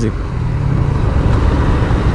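Steady wind rush over the microphone with the road and engine noise of a Suzuki GSX-R150 motorcycle cruising at about 45 km/h.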